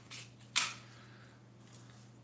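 A faint tap, then one sharp click about half a second in, from a hand-held cigarette tube injector being handled.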